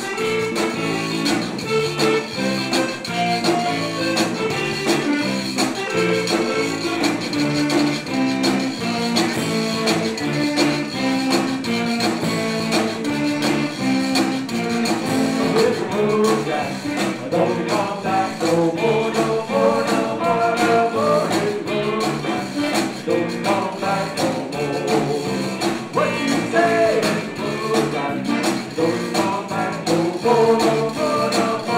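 Zydeco band playing live: an accordion carries the melody over electric guitar and drums, loud and without a break.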